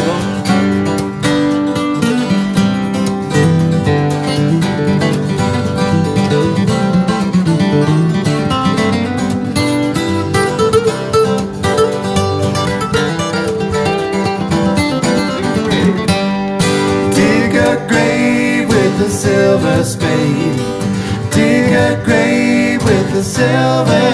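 Acoustic guitars playing an instrumental break in a blues-country song, one guitar picking a lead solo over the others' rhythm playing.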